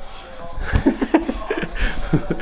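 A hammer tapping out the knockout of an electrical junction box: several short, sharp knocks starting about three-quarters of a second in.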